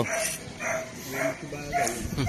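Several dogs barking, short barks in quick succession, about five in two seconds.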